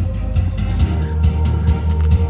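Music with heavy bass and a steady beat, played through a Tesla Model Y's own speakers as the soundtrack of a custom light show.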